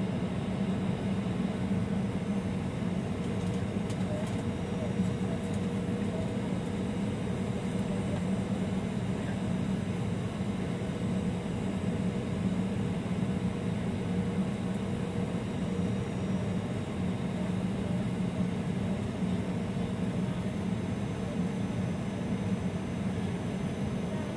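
Steady cabin noise of an airliner in flight, heard from inside the passenger cabin: an even rush of engines and airflow with a low hum.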